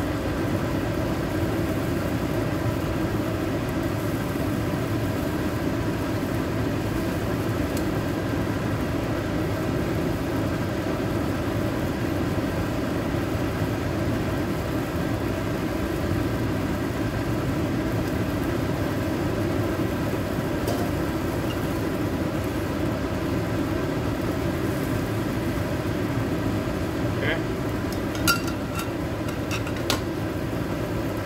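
Steady rushing noise of a gas stove burner heating a wok of beef in broth, with a few short clicks near the end.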